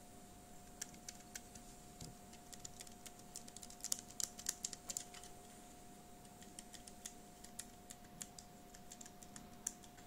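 Scissor-switch keys of a Perixx Peripad-202 numeric keypad being pressed, a run of quiet, light key clicks that starts about a second in and is quickest around four to five seconds in.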